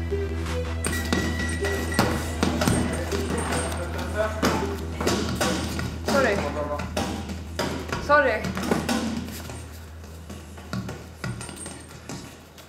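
Gym training sounds under a low steady music drone: a busy run of sharp knocks and slaps typical of gloved punches on pads and bags, with a few short voice sounds about 6 and 8 seconds in.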